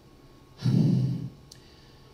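A man's exasperated sigh into a handheld microphone, with some voice in it, lasting under a second and starting about half a second in. A faint click follows.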